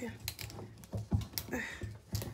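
Plastic screw cap of a lemon juice bottle being twisted by hand, giving a string of sharp plastic clicks as it resists opening.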